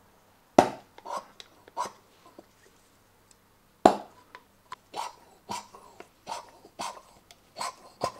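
Irregular sharp clicks and knocks, about ten of them, the loudest about half a second in and near four seconds: a plastic chisel working at the seized throttle plates of a motorcycle's four-carburettor bank to free them.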